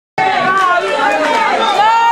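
Crowd of voices talking and calling out over one another, cutting in suddenly as the recording starts.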